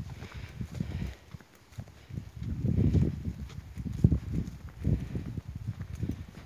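Footsteps of a person walking in boots on a dirt footpath, an uneven run of low thumps with rustling and a low rumble close to the microphone, and a sharper knock about four seconds in.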